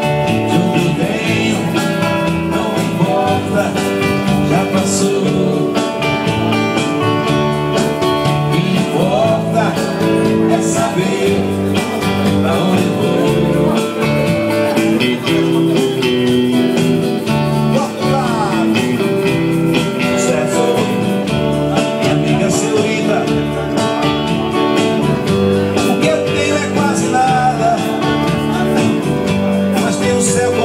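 Live band music: electric bass and guitar playing a song, with a man singing into a microphone.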